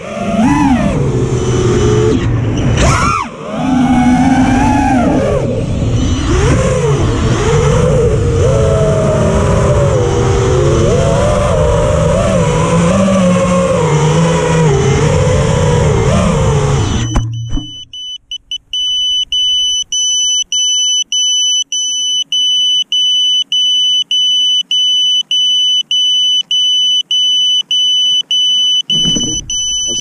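FPV quadcopter's brushless motors and propellers on a 5S battery whining, pitch rising and falling with the throttle, until they cut out suddenly about 17 seconds in. Then the quad's electronic buzzer beeps steadily, high-pitched, about two beeps a second, as it lies on the ground.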